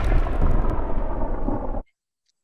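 The rumbling tail of an explosion sound effect: a deep roar of noise that fades slowly after the blast, then cuts off abruptly near the end.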